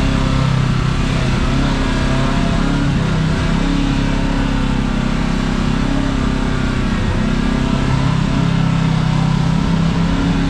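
Side-by-side UTV engine running steadily at low trail speed, its pitch drifting slightly up and down with small throttle changes.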